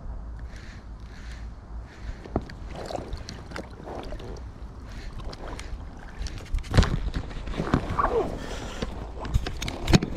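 Wind on the microphone and water lapping against a small inflatable fishing boat, with scattered knocks and clicks from handling a baitcasting rod and reel. The loudest is a sharp knock about seven seconds in.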